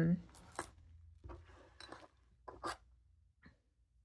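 A few faint, short clicks and taps, spread out one at a time, as a plastic spring-plunger fountain pen and a small capped ink sample vial are picked up and handled.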